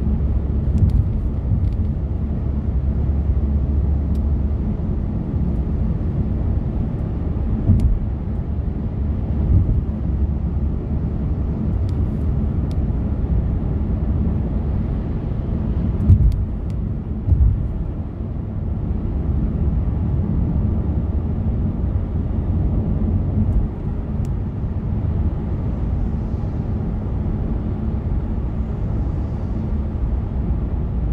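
Steady low road and engine rumble inside the cabin of a car travelling at highway speed, with two brief louder bumps about halfway through.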